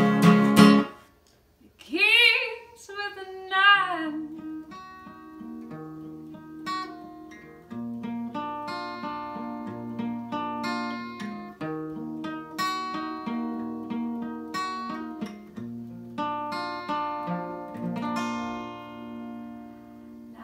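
Acoustic guitar with a capo: strummed chords that stop about a second in, then a short wordless sung phrase, then an instrumental break of single picked notes.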